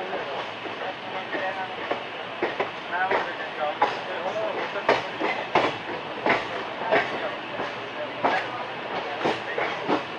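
Indian Railways express passenger coach running at speed, heard from its open door: a steady rush of running noise with the wheels clacking sharply over rail joints at uneven intervals.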